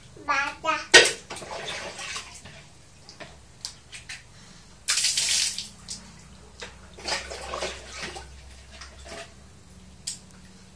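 Water from a plastic dipper being scooped and splashed onto a tiled bathroom floor: a knock and splash about a second in, a louder splash at about five seconds, and more splashing around seven to eight seconds.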